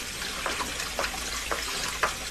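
Kitchen tap running steadily into a sink, with a few small splashes.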